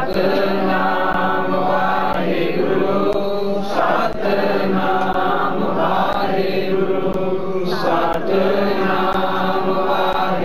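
Devotional Sikh simran chanting by voices through a microphone, in repeated sung phrases about two seconds long, over a steady held low tone.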